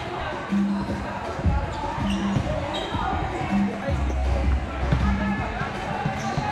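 Volleyballs thudding and bouncing on an indoor court floor in a large echoing gym, over background music with a repeating bass pattern and people talking.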